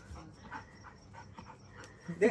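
A dog panting faintly after chasing a ball, in short irregular breaths.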